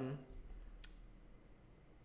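A single sharp click of a computer keyboard key a little under a second in, as text is typed, over faint room tone.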